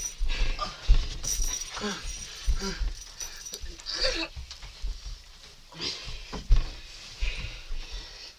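Two people wrestling at close range: strained grunts and short yells, with a few dull thumps of bodies hitting.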